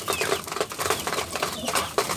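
Racing pigeons pecking grain from a plastic feeder: a dense, irregular patter of beak clicks and taps.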